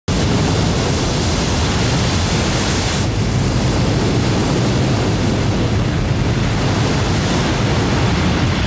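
Wind buffeting the microphone: a loud, steady rushing noise, heaviest in the low end, whose hiss drops away sharply about three seconds in.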